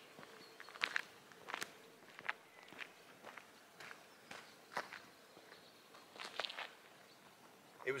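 Faint footsteps walking on a rough road surface, about two steps a second.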